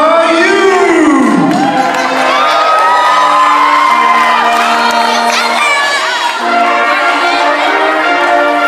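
Audience cheering, shouting and whooping loudly, with a brass band holding long chords underneath.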